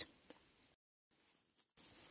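Near silence: faint room tone, broken in the middle by about a second of complete digital silence at an edit cut.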